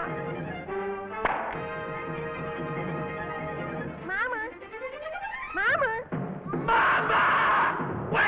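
Cartoon orchestral score with held notes, a sharp knock about a second in, and swooping whistle-like pitch glides in the middle. Near the end a loud noisy burst takes over.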